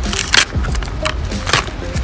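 Rigid clear plastic packaging being handled and pried open: a series of sharp plastic clicks and crackles, two of them louder, about half a second in and about a second and a half in.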